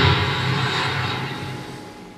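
Steady rushing background noise with a faint low hum from a slot machine and the room around it, fading away evenly.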